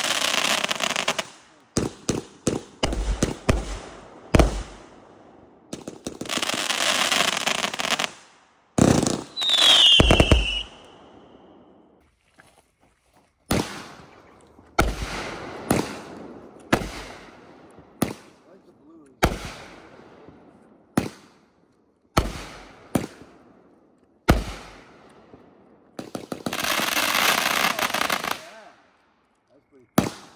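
Miracle 'Never Say Die' consumer fireworks cake firing shot after shot: sharp launch thumps and aerial breaks every second or two. There are stretches of dense crackling stars at the start, about a quarter of the way in and near the end, and a short falling whistle about a third of the way in.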